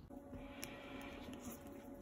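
Faint room tone with a steady low hum and a thin steady tone above it, with a few light clicks.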